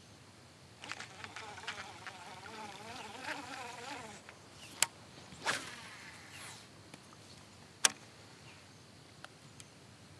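A flying insect buzzing close by, its pitch wavering up and down, starting about a second in and lasting about three seconds. After it, a few sharp clicks, the loudest near eight seconds in.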